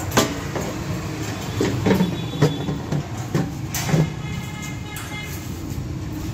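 A steady low mechanical rumble with irregular sharp metallic clanks, about half a dozen of them, from a TAKYO TK3000 banana-stem chopper and its steel blades.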